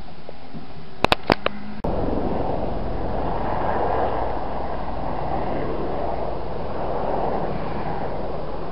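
A few sharp clicks, then from about two seconds in a steady, loud rushing outdoor noise with a low rumble.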